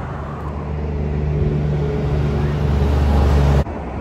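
A motor vehicle's engine humming on a highway, growing steadily louder as it approaches, then cut off abruptly near the end.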